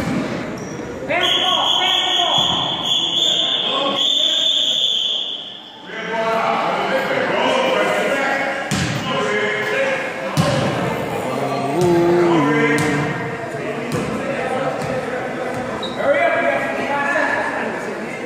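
A gym scoreboard buzzer sounds one long steady tone for about four and a half seconds, starting about a second in. Afterwards a basketball bounces a few times on the hardwood gym floor among the chatter of children and spectators.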